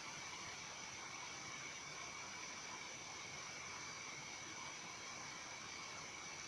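Faint steady hiss of background noise with two thin, high, steady tones running through it, and no distinct sound events.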